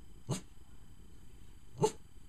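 A Chihuahua giving two short barks, the second louder, as its trained way of saying "please" for a treat of chicken.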